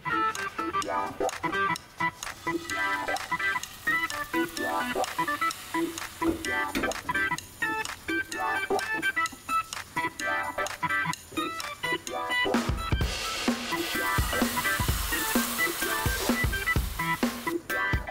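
Background music with a busy melody of short pitched notes. About thirteen seconds in, a bright hiss and deep beats join it.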